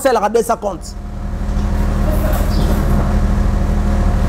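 A man's speech breaks off about a second in. A low, steady engine hum then swells up and holds, like a motor vehicle running close by.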